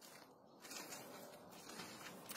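Near silence: faint, even background noise with no distinct sound.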